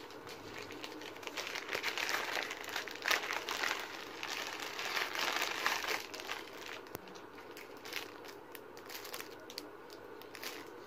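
Plastic packaging crinkling and rustling as a mailer bag is opened and a small item sealed in a clear plastic bag is pulled out, busiest in the first half and thinning out toward the end.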